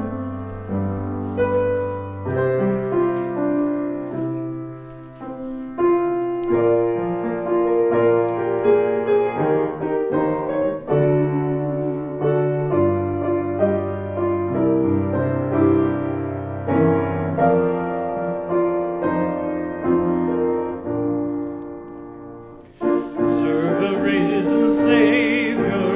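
Piano playing the introduction to a hymn in slow, sustained chords over a moving bass line. Near the end it pauses briefly and the hymn proper begins.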